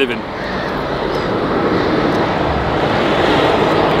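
City bus passing on the street close by: a steady rushing of engine and road noise that swells over a few seconds and cuts off abruptly at the end.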